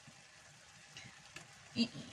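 A frying pan of chopped vegetables in tomato sauce sizzling faintly on the heat, with a couple of light clicks.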